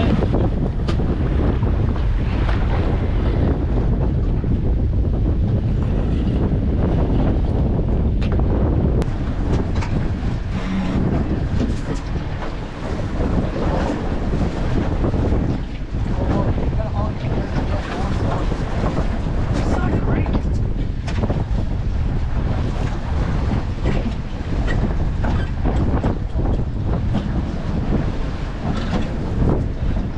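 Strong wind buffeting the microphone over a rough sea, with waves breaking and slapping against a small boat's hull.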